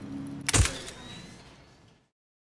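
A single sharp thump about half a second in, dying away to silence.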